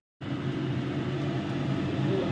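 A steady machine hum, like a fan or motor running, cutting in suddenly after a brief silence and holding even.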